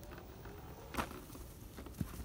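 Low background rumble with a single sharp knock about a second in, and a fainter knock near the end.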